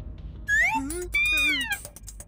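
Two loud, high-pitched cartoon cries with wavering pitch, about half a second in: a short rising one, then a longer one that rises and falls.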